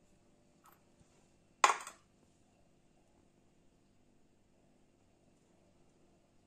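A ceramic bowl set down on a glass-topped digital kitchen scale: one sharp clink with a brief ring about one and a half seconds in.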